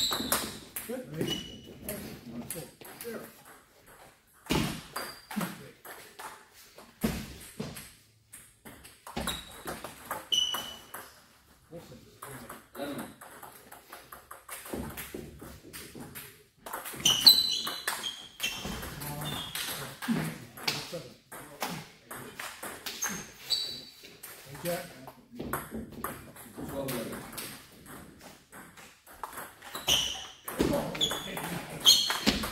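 Table tennis ball clicking off paddles and the table in quick back-and-forth rallies, sharp pinging taps at irregular intervals with short pauses between points.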